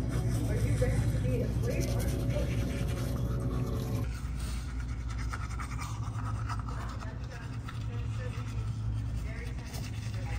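Manual toothbrush scrubbing teeth through a mouthful of foam: a fast run of bristle strokes, with faint voices talking in the background.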